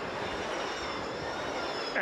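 Electric ice-racing cars sliding through a snowy corner: a steady rush of tyre noise on snow and ice, with a faint high electric-motor whine that falls slightly in pitch.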